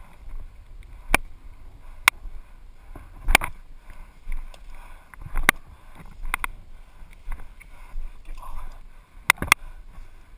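Rustling and swishing of tall dry grass as a person pushes through it on foot, with sharp cracks scattered irregularly through it, two close together near the end.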